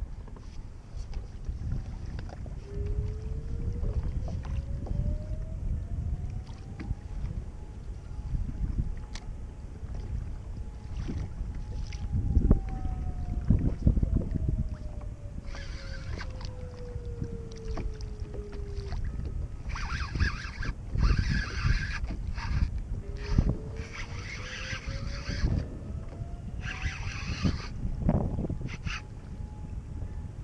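Wind buffeting the microphone over choppy water around a small kayak, a steady low rumble throughout. A faint whistle-like tone slides up in pitch, holds, and slides back down, then rises again near the end, and from about halfway through there are several short hissing bursts.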